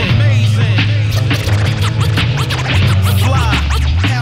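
Hip-hop instrumental with turntable scratching: quick back-and-forth record scratches over a steady bass line and beat.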